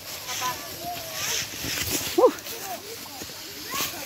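Young children's voices chattering and calling out, with a short loud call about two seconds in, over the crunching rustle of dry fallen leaves underfoot.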